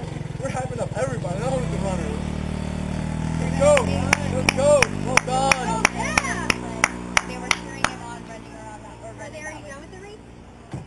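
A motor scooter's engine passing and fading. Then about four seconds of steady rhythmic clapping, about three claps a second, with voices calling out, before it dies away.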